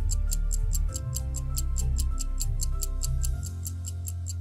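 Quiz countdown-timer sound effect: a clock ticking rapidly and evenly, several ticks a second, over soft background music with sustained notes and a low bass.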